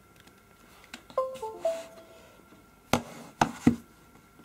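A short electronic chime of three quick descending notes: the device-connect sound as the Surface RT detects the Nexus 7 plugged in over USB. It is followed near the end by three sharp knocks from the tablets being handled.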